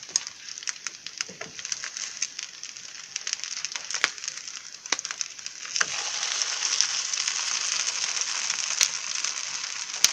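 Sardine-and-cracker patties sizzling in hot oil on a flat griddle as they brown, a steady hiss with frequent sharp crackles and pops. The sizzle grows louder about six seconds in.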